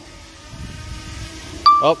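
Low wind rumble on the microphone, then near the end one short, loud electronic beep as video recording starts on the DJI Mini 2 from its controller app.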